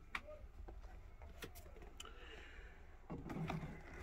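Faint scattered clicks and rustling of handling: a pair of sneakers being slid into a clear plastic shoe display box, with a short spell of muffled rubbing near the end.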